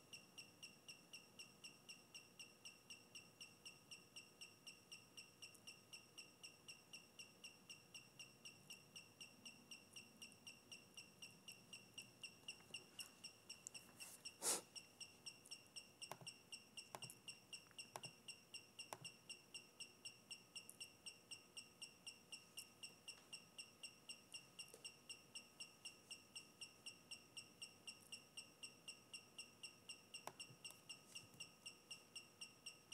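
Faint, rapid high-pitched chirping, about four to five chirps a second, from the brushless motors of a 3-axis gimbal running Alexmos SBGC auto PID tuning on the roll axis: the controller is shaking the axis to work out its PID settings. A single sharper click comes about halfway through, with a few lighter clicks soon after.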